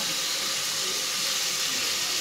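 Onion-tomato masala sizzling steadily in an open pressure cooker, an even hiss with no clear strokes or knocks.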